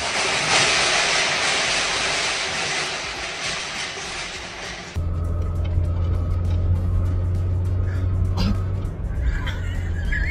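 Stacked goods collapsing off shelving: a loud, noisy crashing rush that lasts about five seconds. It cuts off abruptly to a steady, deep low hum.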